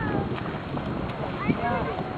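Wind rushing on the microphone by the open lake water, with faint distant voices calling, most of them near the end.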